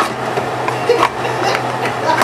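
Kitchen knife tip clicking and scraping against a jar's metal lid as it is jabbed and pried open, a few sharp clicks over a low steady hum.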